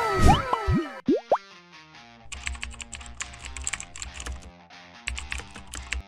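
Edited-in cartoon sound effects, a falling sliding glide followed by a quick rising boing, then an upbeat electronic background jingle whose low beat comes in a couple of seconds later.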